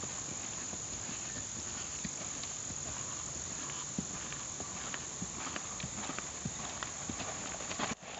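Hoofbeats of a ridden horse moving over grass and dirt, growing more distinct in the second half as the horse passes close. A steady high drone of insects runs underneath.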